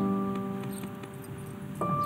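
Slow piano music: a chord held and fading away, then a new chord struck near the end. Faint light clinks sound over it near the middle.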